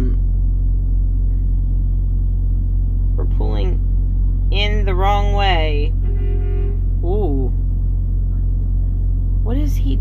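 Steady low drone of a semi-truck's diesel engine idling, heard from inside the cab, with a few short wordless vocal sounds in the middle.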